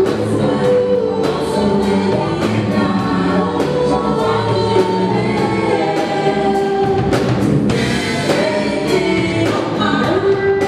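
Live gospel worship song: a small vocal group singing in harmony with long held notes, backed by keyboard and drum kit keeping a steady beat.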